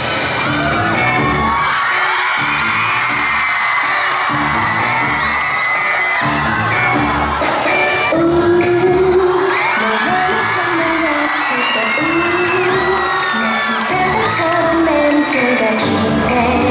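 Recorded pop song with a sung vocal over a steady beat, played over the hall's speakers as backing music for a stage dance.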